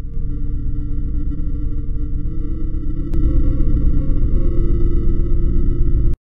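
Dark electronic drone music: held synthesizer tones over a dense, fluttering low rumble. It steps up in loudness just after the start and again about halfway through, where a sharp click sounds.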